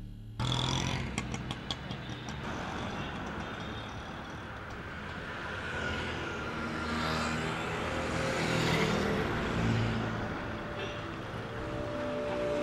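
Busy street traffic: motor scooters and cars passing, a steady swelling and fading rush of engines and tyres that starts abruptly just after the beginning, with a few light clicks in the first two seconds.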